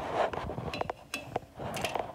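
A few short, light clinks and knocks as small clear items are dropped into a stainless-steel bowl of water and sink against its bottom and sides.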